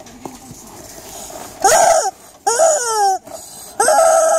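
Toy chicken of the Git Git Gıdak game giving three squawking electronic calls, each ending in a falling pitch, the last the longest; the sound is described as very bad.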